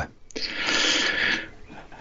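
A person's breath close to the microphone: about a second of breathy noise with no voice in it.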